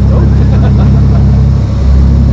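Dive boat's engine running steadily under way, a loud low drone that dips briefly near the end.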